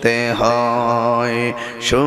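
A man singing a slow Bengali devotional song, holding one long note for about a second and a half before a short pause and a brief hiss near the end.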